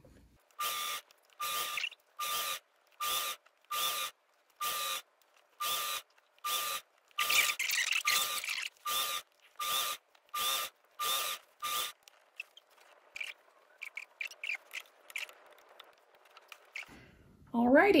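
Singer sewing machine running in short, even bursts, about one every three-quarters of a second, each with a steady motor whine, as a string of short seams is stitched. From about twelve seconds in, only faint clicks and rustles of fabric being handled.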